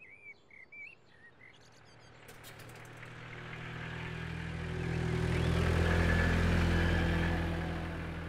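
A few short bird chirps, then a road vehicle approaching and passing, its engine hum and road noise swelling to a peak about six seconds in and then fading.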